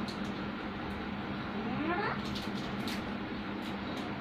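Labrador dog giving one short rising whine about two seconds in, over a steady background hum.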